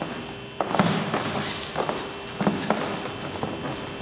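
Bare feet stepping and shuffling on foam mats, with a round kick and counter strikes landing on gloved arms and hands as several dull thuds. The impacts fall about half a second to a second in and again around two and a half seconds.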